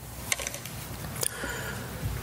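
Low room noise in a hall during a pause, with a few faint clicks.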